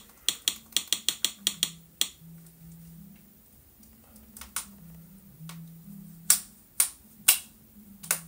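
A series of sharp clicks: a quick run of about ten in the first two seconds, then half a dozen single clicks spread over the rest.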